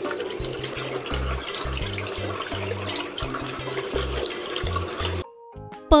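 Water running from a tap in a steady stream, over the low, rhythmic bass beat of a children's song. The water cuts off suddenly about five seconds in.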